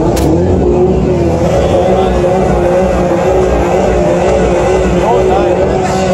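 A car engine revved up and held at one steady high pitch for about five seconds, then let down near the end.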